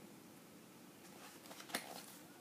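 A quiet pause, then a faint paper rustle and a light click near the end as a comic book's pages are handled and turned.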